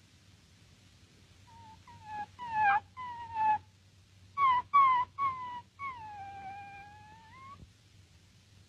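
A series of high-pitched animal cries used as a comedy sound effect: a few short calls that fall in pitch, in two groups, then one long drawn-out call that dips and rises again at its end.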